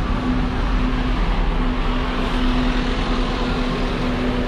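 Street traffic noise as an open-top double-decker tour bus drives past, with a steady low hum throughout.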